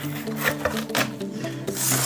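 Cardboard firework shell tube and its box being handled: rubbing and scraping of cardboard on cardboard, with a couple of sharp knocks and a louder scrape near the end, over background music.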